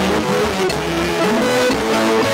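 Live church band playing continuously, an electric guitar line stepping from note to note over sustained bass notes.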